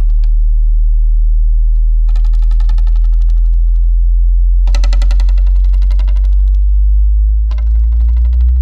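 Electronic music from a live contemporary percussion-duo piece: a loud steady low hum under three bursts of rapid, buzzing, machine-gun-like clicking, with a low tone slowly rising in pitch near the end.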